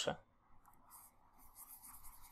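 Faint scratching and light ticks of a stylus drawing on a tablet.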